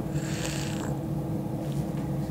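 A crying woman drawing one long sniffing breath, starting just after the beginning and lasting under a second, over a steady low hum.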